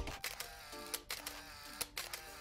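Camera-shutter click sound effects, a few sharp clicks spread through the two seconds, over faint electronic tones that slide in pitch.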